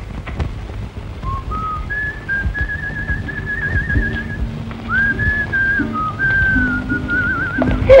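A person whistling a melody with warbling trills over soft orchestral accompaniment, the opening phrase of a film song. The tune starts about a second in and pauses briefly midway.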